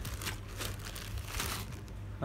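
Clear plastic wrapping crinkling in a quick run of short, irregular rustles as a ring light's stand is pulled out of it.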